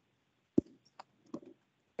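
A few short, sharp clicks in an otherwise quiet room; the loudest comes a little over half a second in, with fainter ones at about one second and just after.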